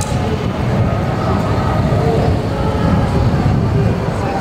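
Police car driving slowly past close by: a steady rumble of engine and tyres on the street, with faint voices behind it.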